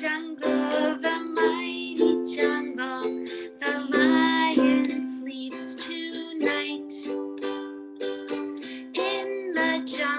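Ukulele strummed at a slow, even pace in the down, down, up, up, down, up pattern, moving through C, F and G chords, with a woman singing along.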